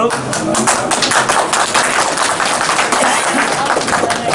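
A group of people clapping their hands: a dense, steady round of applause.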